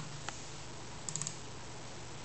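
A few light computer keyboard keystrokes over faint room hiss: a single tap, then a quick run of three or four about a second in.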